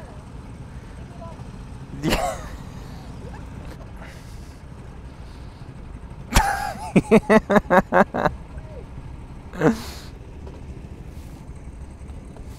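A person laughing: a loud burst about six seconds in, then a quick run of about ten ha-ha pulses that lasts over a second, over steady low background noise.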